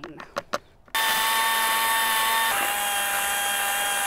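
Cordless drill spinning a mud-mixer paddle through wet concrete mix in a plastic bucket, starting about a second in with a steady whine. The pitch drops slightly partway through as the paddle works the thick mix.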